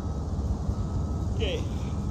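Steady low rumble of an idling vehicle engine, with a brief distant voice about one and a half seconds in.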